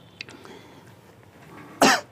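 One short, sharp cough near the end, much louder than anything else, over faint rustling and small clicks of cloth being handled.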